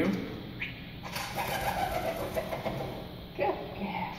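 Pigeon's wings flapping as it flies past a row of microphones, heard through a lecture hall's speakers from a projected video. The flapping runs from about a second in until shortly before the end.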